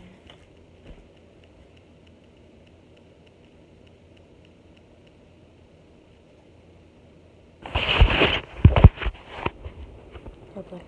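Faint steady room hum, then near the end about two seconds of loud rubbing and knocking as the phone that is recording is picked up and handled close to its microphone.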